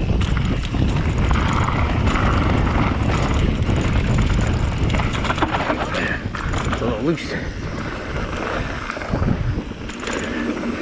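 Wind buffeting the camera microphone and knobby tyres rolling over a dirt singletrack on a moving electric mountain bike, with short knocks and rattles from the bike over bumps.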